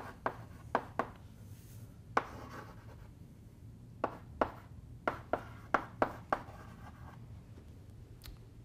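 Chalk writing on a blackboard: a dozen or so sharp taps in irregular clusters as symbols are struck onto the board, with a couple of longer scrapes, over a steady low room hum.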